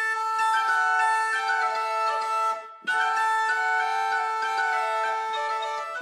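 Medieval portative organ playing a slow melody of held notes over a sustained drone note, the sound cutting out briefly about halfway through.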